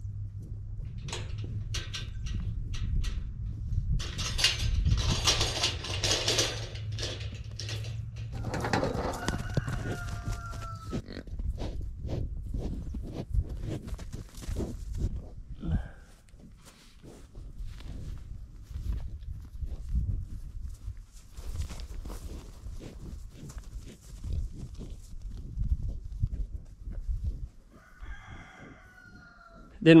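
A bird's crowing call, like a rooster, about nine seconds in and again briefly near the end. Underneath are a steady low hum, rustling and scattered knocks.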